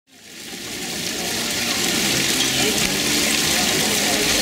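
Steady rush of running water, fading in over about the first second, with faint voices of people beneath it.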